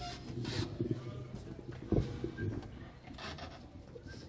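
Stage noise between pieces: rustling and shuffling as band members move and handle their things, with a single knock about halfway through.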